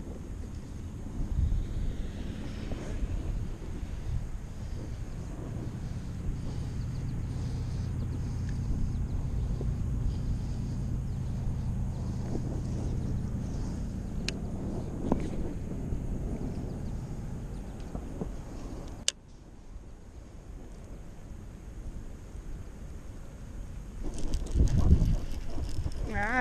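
Wind buffeting the microphone: a steady low rumble that drops suddenly about two-thirds of the way through, with a couple of faint sharp clicks.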